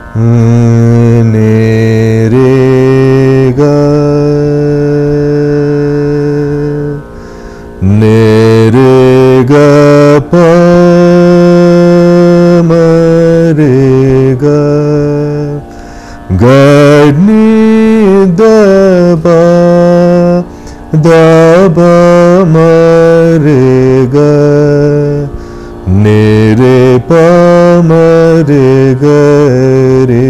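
A man singing phrases of Raga Yaman in the Hindustani manner, in long, mostly steady held notes with only a few glides, broken into several phrases by short pauses. The plain notes mark Yaman, as against the heavily oscillated notes of Carnatic Kalyani.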